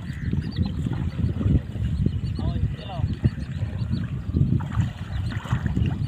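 Water sloshing and swirling around the legs of men wading through shallow water while they drag a fine-mesh seine net, with a rough low rumble of wind on the microphone and a few short calls from the men.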